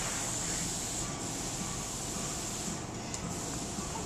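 Steady background hiss of room noise with no distinct event, apart from a faint tick about three seconds in.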